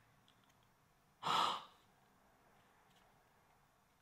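A single short, breathy exhale or inhale about a second in, lasting about half a second; the rest is near-silent room tone.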